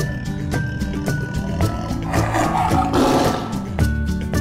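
Background music with a steady beat. About halfway through, a tiger roar sound effect lasting about a second and a half is laid over it.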